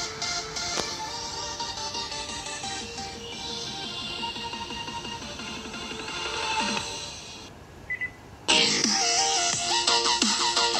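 Electronic dance music played through a tiny 2-watt Steponic Macaron S1 Bluetooth speaker. It drops out for about a second near the end, then comes back louder.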